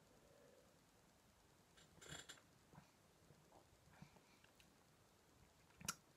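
Near silence: room tone with a few faint mouth sounds of a beer being sipped and tasted, the clearest about two seconds in, and a small sharp click near the end.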